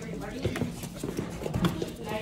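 Quick, light clicking steps on a hard floor, mixed with people talking.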